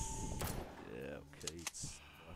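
Online slot-game sound effects as a VS wild symbol expands into a full-reel multiplier wild. There is a sharp bang about half a second in, a couple of short clicks later and a brief hiss near the end.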